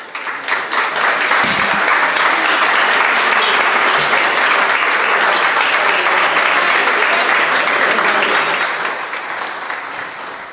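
Audience applauding, starting all at once and holding steady before fading out near the end.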